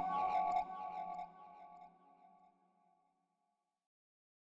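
Granular synth pad from Reason's Scenic instrument, built from a kalimba sample: its sustained, reverberant tones die away within about two and a half seconds.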